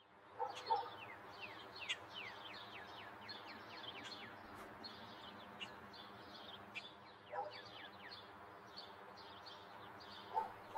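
Birds chirping in a rapid run of quick falling chirps, over a steady low hum, with a few short lower calls about half a second in and again around seven and a half seconds.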